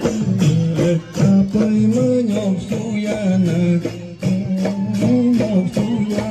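Mising folk music for the Gumrag dance: a sung melody over a steady percussion beat.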